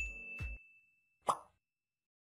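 Sound effects of an animated subscribe button. A bright bell-like ding rings on and fades out, two low plops come in the first half-second, and one short pop comes about 1.3 seconds in.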